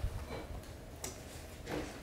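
Cloth rustling as a bundle of baby onesies is handled and pulled from a cardboard box, with a few light ticks near the start, just after a second in, and near the end.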